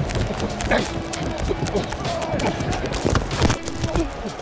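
Football player sprinting on kickoff coverage, heard through the microphone worn on his body: quick pounding footsteps and shoulder pads and gear thumping and knocking against the mic.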